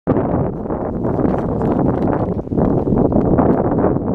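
Wind buffeting the camera's microphone: a loud, steady rumble with no engine or motor tone in it, dipping briefly about halfway through.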